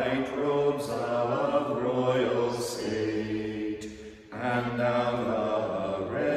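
Two men chanting psalmody of Catholic Vespers together, on a mostly level reciting tone, with a short break for breath about four seconds in.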